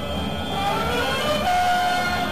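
Carnival street-band music for a frevo parade: long held high notes and some gliding notes over a steady low bass.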